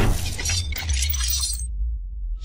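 Cinematic intro sound effects: a sharp impact with a glassy, shattering texture over a deep low rumble. The high part dies away shortly before the end.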